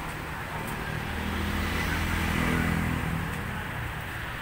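A motor vehicle engine passing nearby: a low hum that grows louder over the first two seconds or so and then fades away.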